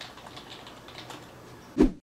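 Typing on a computer keyboard: a run of quick, light key clicks, then one loud thump near the end.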